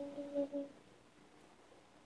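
A cappella voice holding one steady note, which stops less than a second in; the rest is near silence.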